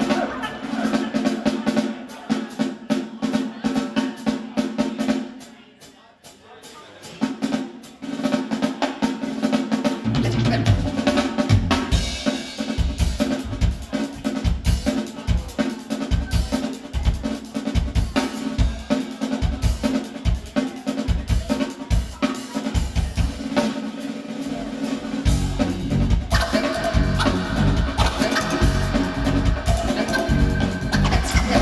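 Live band music led by a drum kit: a quick drum groove with snare and rimshot strokes over a held note. It drops away briefly around six seconds in. A low, pulsing beat comes in about ten seconds in, and the sound grows fuller near the end.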